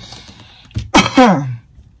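A woman draws a breath, then coughs once, loudly, about a second in, the voiced tail of the cough falling in pitch.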